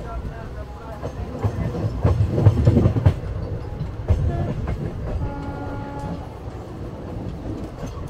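Express train coach running on the track, a steady low rumble with a run of wheel clatter over the rail joints about two to three seconds in. A short steady tone sounds briefly about five seconds in.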